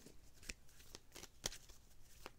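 Faint shuffling of a tarot deck with a few soft snaps of cards, as a clarifier card is being drawn.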